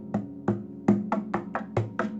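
Acoustic guitar strummed in short, sharp percussive strokes, about four a second and slightly uneven, with the chord ringing between them.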